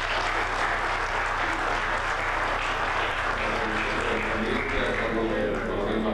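Applause from a hall full of people: steady clapping that dies down near the end.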